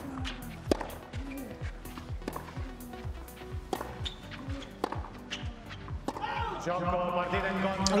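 Background music with a steady thudding beat, over a tennis rally: several sharp racket strikes on the ball, one every second or so. The music swells and gets louder near the end.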